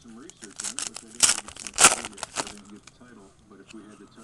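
Foil trading-card pack wrapper being torn open and crinkled by hand, with two louder rips about a second and two seconds in.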